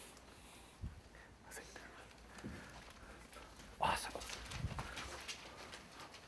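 Faint sounds of a classroom of children working on paper: light scattered rustling and a soft knock just under a second in. A man says "awesome" about four seconds in.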